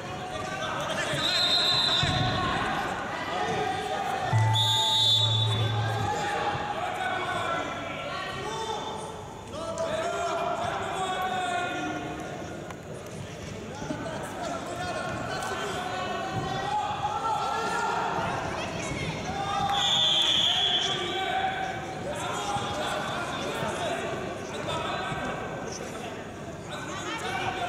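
Voices echoing in a large sports hall around a wrestling mat. There is a thump about two seconds in, short high whistle-like tones about a second in and again about twenty seconds in, and a steady electronic buzzer-like tone lasting about a second and a half from about four and a half seconds.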